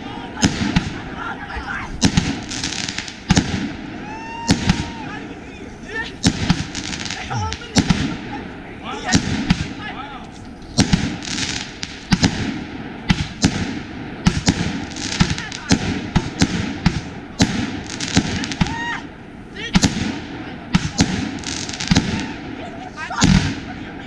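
Consumer aerial fireworks bursting overhead: a rapid, irregular string of sharp bangs and crackles, dozens of reports one after another.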